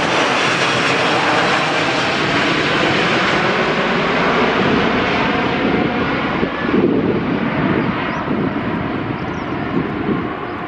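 Four-engine Airbus A380 jet climbing out after takeoff, its Rolls-Royce Trent 900 engines making a loud, steady rushing noise overhead. From about six seconds in the hiss fades and a lower rumble takes over as the airliner moves away.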